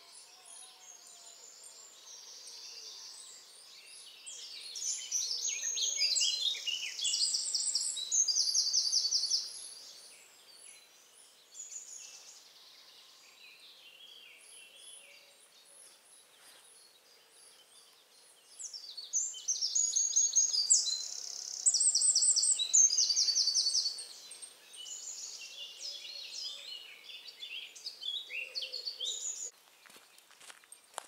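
Songbirds singing in a dawn chorus: a loud, fast, high trilling song starts about four seconds in and runs for about five seconds, then comes again in a longer run from about nineteen seconds to near the end, over fainter birdsong throughout.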